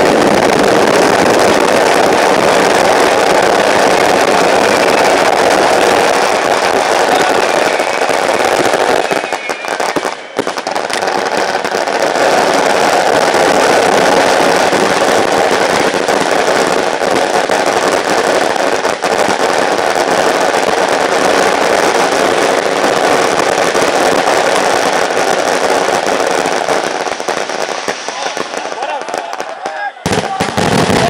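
Fireworks crackling and popping continuously in a dense, loud mass of noise that briefly drops about ten seconds in and thins out near the end.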